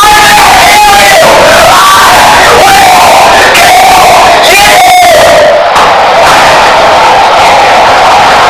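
A boy screaming and yelling without a break in a freakout, his voice boosted until it is heavily distorted and clipped.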